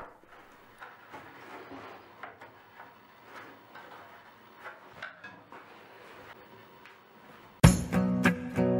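Faint, scattered clicks and taps of metal bar clamps being set and tightened on a glued-up wood panel. About half a second before the end, guitar music starts suddenly and loudly.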